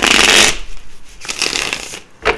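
A tarot deck being shuffled by hand: a loud rapid flutter of cards for about half a second, then a second, quieter run of shuffling in the last part.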